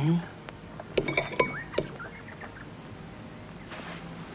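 Light clinking of crockery, starting about a second in: a handful of sharp chinks with a short rising squeak among them, over about a second and a half.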